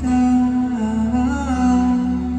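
Live ballad performance: a male singer holds one long, wordless note into the microphone, bending slightly about one and a half seconds in, over a soft band backing of guitar and bass.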